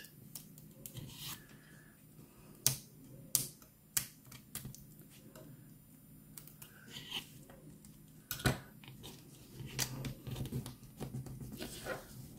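Light, scattered clicks and taps of a pointed craft tool and fingertips pressing small foam adhesive dots onto a paper strip on a cardboard mat.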